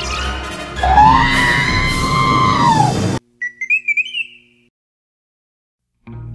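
Film-score music with a loud held wail over it, arching up and then down in pitch, all cutting off suddenly about three seconds in. Then about a second of high warbling electronic beeps in the style of R2-D2, then silence.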